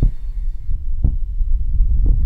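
Intro sound effect for a logo animation: two deep bass thumps about a second apart over a sustained low rumble.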